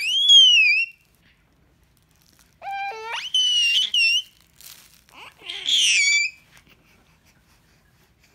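Baby squealing with delight: three high-pitched squeals, the loudest right at the start, a second that slides steeply upward about three seconds in, and a shorter third around six seconds.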